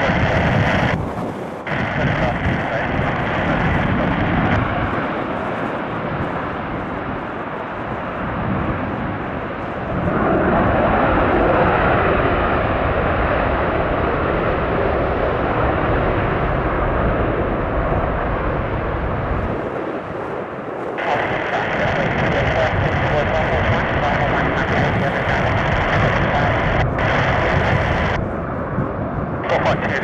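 Twin General Electric F414 turbofan engines of two F/A-18F Super Hornets running up and taking off on afterburner: a loud, steady jet roar that grows louder about ten seconds in and carries on as the jets climb away, with a few brief dips.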